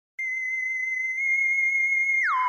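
A single steady, high-pitched electronic tone that starts a moment in and holds one pitch: the opening note of a synthesizer intro tune.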